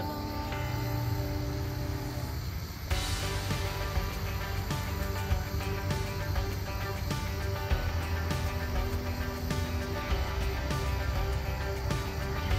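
Background music with steady held notes over a bass line, growing fuller about three seconds in.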